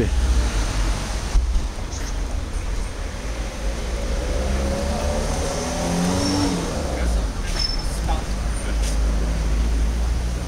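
Street traffic noise, with a car engine running nearby and faint voices in the background.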